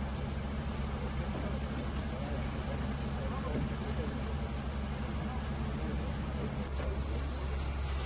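A vehicle engine idling steadily with a low hum; its note shifts slightly near the end.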